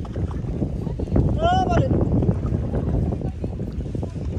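Wind buffeting the microphone on a moving boat, a loud, uneven low rumble, with a person's short rising-and-falling call about one and a half seconds in.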